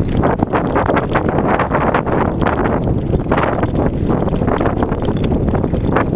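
Wind buffeting a moving camera's microphone, with constant rattling and knocking as it rides over a rough, rocky trail.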